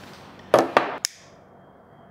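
A cigarette lighter being handled and struck: two short scraping strokes about half a second in, then a sharp metallic click.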